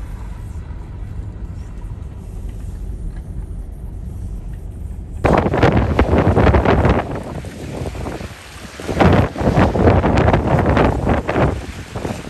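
Wind buffeting the microphone over a low rumble of traffic on a wet street, breaking into loud gusts about five seconds in and again about nine seconds in.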